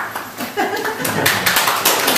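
Audience applauding, the clapping thickening about a second in, with some voices among it.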